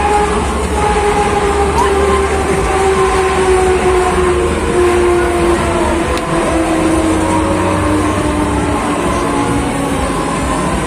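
Break Dance fairground ride running, its machinery giving a whine that slowly drops in pitch over a steady low rumble.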